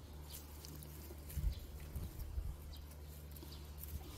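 Rustling of radish leaves and soil as ponytail radishes are handled and pulled by a gloved hand, with a few dull thuds about a second and a half in and around two seconds in.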